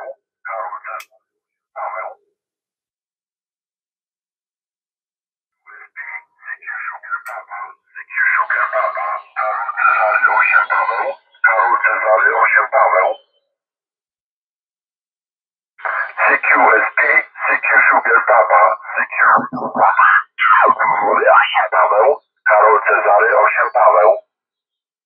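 Amateur radio voice transmissions on the 40-metre band coming from the Hammarlund HQ-140-XA receiver's loudspeaker, thin and narrow-sounding with little low end, heard in several stretches separated by silent pauses.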